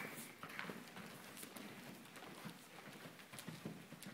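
Faint hoofbeats of a horse moving around the arena.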